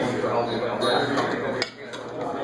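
Glass coffee server and pour-over dripper clinking as they are handled and set down on a scale, with one sharp clink about one and a half seconds in, against a background of voices chattering.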